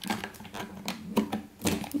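Hard plastic toy parts clicking and knocking as an action figure is pushed into a toy helicopter's cockpit: a run of irregular light clicks.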